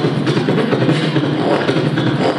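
Solo beatboxing into a handheld microphone: a dense, unbroken stream of bass-heavy mouth-made beats with no pauses.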